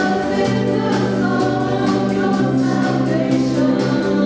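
Choir singing a gospel worship song in parts, accompanied by keyboard, guitar and drums, with a steady beat of drum and cymbal hits.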